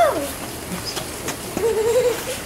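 A person's voice making wordless sounds: a brief rising-and-falling vocal glide at the start, then a held, wavering vocal note near the end, over a faint steady hiss.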